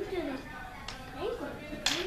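Wooden toy blocks clacking twice, a light knock about a second in and a sharper, louder one near the end, as they are set down and handled. A high voice sounds without words throughout.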